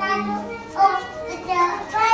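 A small child's voice, babbling and calling out in short wordless phrases while playing, loudest a little under a second in and again near the end.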